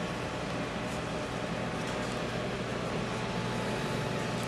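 Steady low hum with an even hiss over it, the constant noise of a running machine such as a fan.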